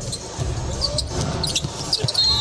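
A basketball being dribbled on a hardwood court in an arena, in irregular low thumps, with short high sneaker squeaks near the end as the player drives.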